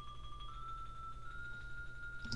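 Sampled xylophone rolls from the Virtual Drumline library in Sibelius playback: one rolled note is held, then it steps up to a slightly higher sustained roll about half a second in. These are recorded rolls, not synthetic tremolos.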